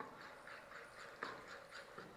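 Faint sounds of a steel spoon stirring thick dosa batter of barnyard millet and sago in a glass bowl, with a light knock about a second in.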